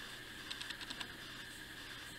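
Faint handling sounds of a cloth wiping a small stained clay figure, with a quick run of small light ticks about half a second in.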